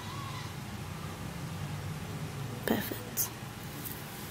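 Quiet handling noise over a steady low room hum, with two soft clicks about three seconds in, as sugar-coated tomato halves are set down on a glass plate.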